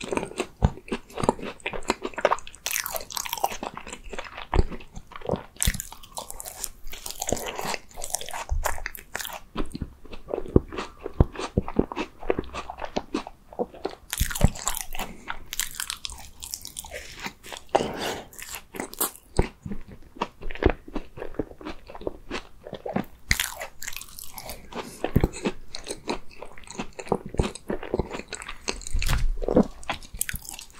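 Close-miked chewing and biting of a blueberry tart: many small, irregular crunches of the crisp pastry shell mixed with soft wet mouth sounds, with fresh bites crackling louder now and then.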